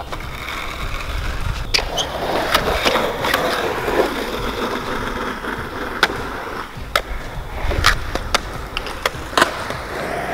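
Skateboard wheels rolling on smooth concrete, a steady rumble with sharp clacks scattered through it, about nine in all, several close together in the second half.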